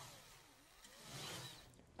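Faint whoosh sound effect for an animated logo transition, a sweep that falls and then rises in pitch, fading away and swelling again briefly about a second in.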